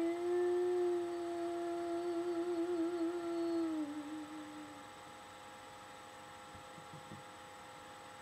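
A woman humming one long closing note of an unaccompanied song, with a wavering vibrato in the middle, dipping in pitch before it fades out about five seconds in. Afterwards only a faint steady electrical hum with a few thin constant whining tones.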